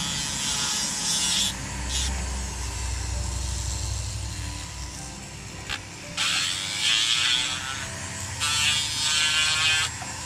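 Flexible-shaft rotary carving tool running with a steady whine while its burr grinds into a small wooden fin in bursts of hissing. The grinding runs through the first second or so, drops away through the middle, and comes back in two longer bursts in the second half.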